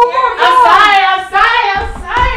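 High-pitched young voices singing or chanting loudly in long, sliding notes, with a short dip about a second and a half in.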